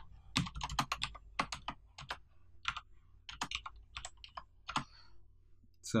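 Computer keyboard keys pressed in an irregular, halting string of keystrokes, some in quick runs, as a character is hunted for on the keyboard, typed and deleted.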